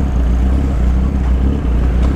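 Kawasaki Z800 inline-four motorcycle engine running at a steady speed while riding, a constant low rumble with no revving.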